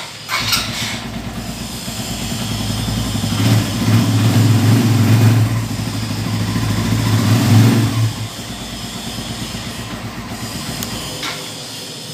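Suzuki GS150 SE single-cylinder four-stroke motorcycle engine starting and running, revved up for a few seconds in the middle before settling back to idle.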